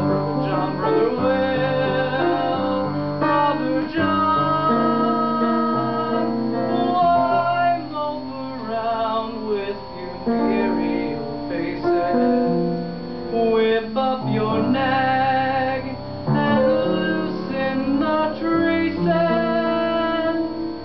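Instrumental accompaniment playing an interlude between sung verses of the song, with held chords and a moving melody line.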